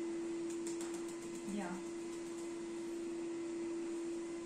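Steady hum of a vacuum cleaner running on the floor below, heard through the ceiling as one unchanging low tone, with a few light clicks about half a second in.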